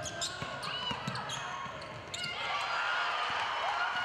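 Basketball dribbled on a hardwood court, with sneakers squeaking. A din of voices in the arena grows thicker about halfway through.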